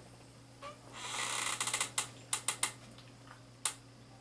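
Two salukis play-fighting on a blanket-covered couch: a scuffling, rasping burst lasting about a second, then a run of sharp clicks, four close together and one more near the end.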